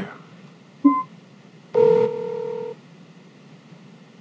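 Humane AI Pin placing a phone call: a short electronic beep about a second in, then a steady ringing tone lasting about a second.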